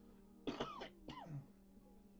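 Two short vocal sounds from a person's voice, each rising and then falling in pitch, about half a second apart, above faint background music.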